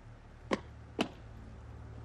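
Two sharp footsteps on hard ground, about half a second apart, over a low steady hum.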